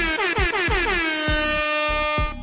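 A hype sound-effect drop over a beat: a loud, buzzy horn-like blast that slides down in pitch over about a second and then holds a steady note, with low drum thumps beneath it.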